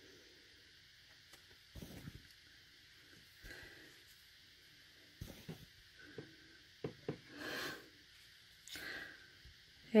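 Quiet, scattered handling sounds at a craft table: a few light taps and clicks, likely stamping gear such as an acrylic stamp block and ink pads, with several soft breaths in between.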